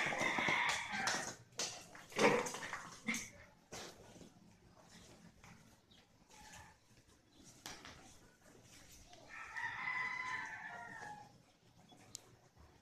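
Squeaky rubber chicken dog toy squawking as a puppy bites it: short squawks with clatters on a tile floor in the first few seconds, then one longer squawk of about two seconds near the end.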